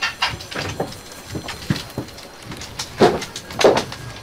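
Light knocks and scuffs of someone getting up from a desk chair, then footsteps on a hard office floor near the end, two firm steps a little over half a second apart.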